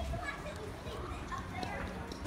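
Background voices of people and children chattering along a busy outdoor path. The voices are faint, with no one speaking close by.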